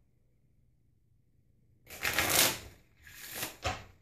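A deck of playing cards being shuffled by hand. There is a quick, loud rush of cards about two seconds in, followed by two shorter rustles.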